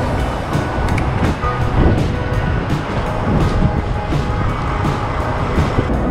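Wind rumble on the microphone and street traffic noise from a bicycle riding through city traffic, under background music with a steady beat.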